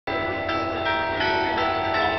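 Bells ringing in quick succession, about three strokes a second, each tone still ringing under the next.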